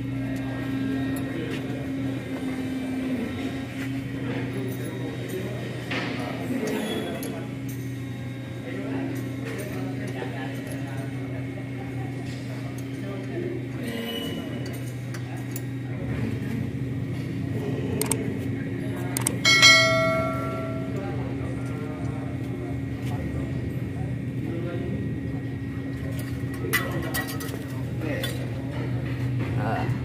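Hand tools and steel parts clinking now and then while a disc brake caliper is unbolted from a car's front hub, over a steady low hum. One bright metallic clink rings out clearly about twenty seconds in.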